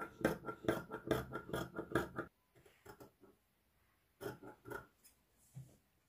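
Fabric scissors snipping through two layers of crepe-type viscose fabric. There is a quick run of snips, about four or five a second, for the first two seconds, then slower, fainter snips with pauses between them.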